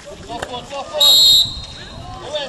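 A referee's whistle blown once, a short high blast about a second in, with players' voices calling on the pitch around it.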